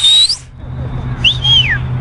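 High-pitched whistling in two calls. The first is breathy and rises sharply, ending just after the start. The second is a short whistle that rises and then falls, about a second and a quarter in, over a steady low background hum.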